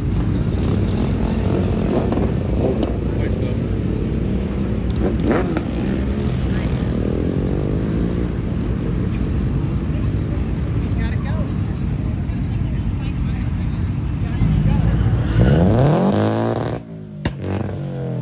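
Car engines at a street car meet: a steady, loud low rumble of running and passing cars, and near the end one engine revving hard, its pitch climbing, before it cuts off suddenly.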